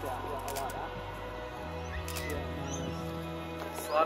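Background music with held chords, the low note changing partway through, and a faint voice under it near the start.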